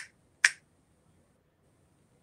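Two finger snaps about half a second apart.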